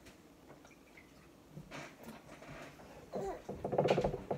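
A few seconds of quiet room with faint handling sounds, then a woman's short, pulsing laugh near the end.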